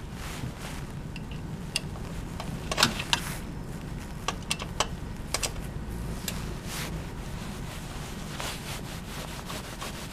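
Light metallic clicks and rubbing as a thin stainless Holeshot heat shield is worked into place on a motorcycle slip-on muffler. The clicks come in a scattered cluster between about two and six seconds in, over a steady low hum.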